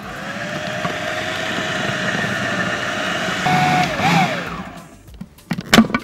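Electric food processor running for about four and a half seconds, mixing cream, strained-yogurt cheese and salt, its motor pitch rising slightly as it spins up, then winding down. A few sharp plastic clicks follow near the end as the lid is handled.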